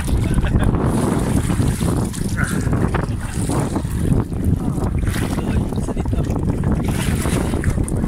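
Wind buffeting a phone's microphone, with water sloshing and splashing as people wade through waist-deep sea.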